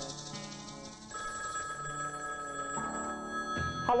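Telephone bell ringing over background music.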